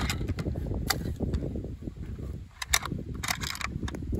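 Sharp metallic clicks and clacks of a Pioneer Arms AKM-pattern rifle's action and magazine being worked by hand, a few spaced apart with a quick cluster near the end, as a jam is cleared; the owner blames the cheap magazine for the jamming.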